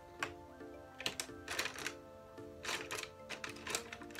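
Background music with a gentle repeating melody, over several quick clusters of sharp clicks and taps from makeup brushes and palettes being handled on a hard surface.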